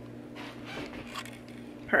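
Quiet room tone with a faint steady low hum and a few soft rustles, then a short spoken word at the very end.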